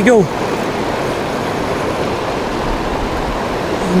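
Steady rush of a river running over rocks and boulders.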